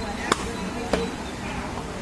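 A steel meat cleaver chopping goat meat on a wooden tree-stump block: two sharp chops about two-thirds of a second apart, then a lighter one near the end.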